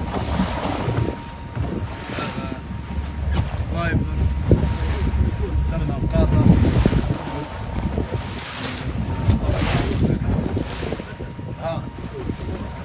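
Wind rushing over the microphone and sea water splashing against the hull of a boat under way, with a low rumble underneath and repeated surges as the boat rides the waves.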